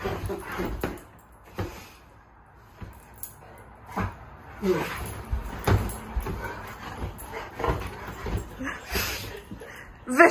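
A pit bull romping on a bed in play: knocks and rustling of paws on the duvet, with short play vocalisations from the dog and a woman's wordless playful noises, including a falling whine-like sound about halfway through.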